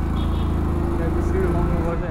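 Small motor scooter's engine running at low road speed, a steady low drone with evenly pulsing exhaust that swells slightly and eases off near the end.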